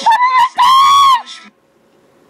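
A young woman's voice sings a last word, then lets out a loud, high-pitched shriek lasting about half a second that rises slightly and falls away. It cuts off about a second and a half in.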